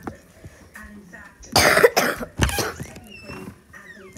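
A person coughing: one loud cough about a second and a half in, then a shorter one just after.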